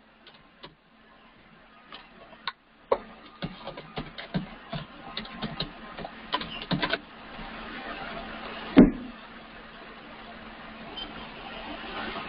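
Typing on a computer keyboard: a run of quick, irregular key clicks, then a steady hiss with one sharper click a little before the end.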